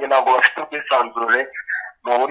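Speech only: a person talking, with a short pause near the end.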